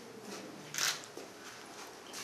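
Quiet room tone with one short, sharp burst of noise a little under a second in.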